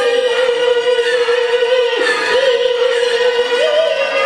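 A woman singing a Peking opera aria into a microphone, holding one long note with vibrato. The note dips briefly and recovers about halfway through, then steps up in pitch near the end.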